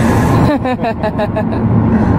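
Steady road and engine noise inside a moving Kia car's cabin, with a person laughing in a quick string of short bursts starting about half a second in.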